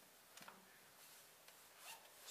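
Near silence: room tone, with one brief faint rustle about half a second in.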